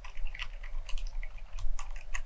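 Continuous typing on an FL Esports CMK75 mechanical keyboard fitted with silent Lime switches and fully lubricated: an irregular run of quiet, low-noise keystrokes, several a second.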